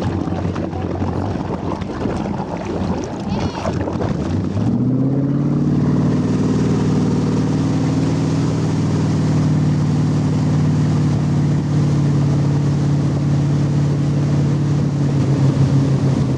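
Tow boat's inboard-style motorboat engine, low and rough at first, then throttled up about four and a half seconds in, rising in pitch and settling into a steady, loud drone under load as it pulls a water-skier up out of a deep-water start.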